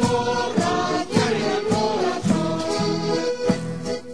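Chilote folk song: several voices singing together over instrumental accompaniment with a steady beat.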